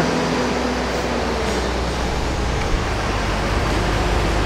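Mensch sand bedding truck running steadily as it throws out the last of its sand into the stalls, its mechanism left running to clear itself out once the load is empty. It makes a continuous mechanical noise with a low hum beneath it.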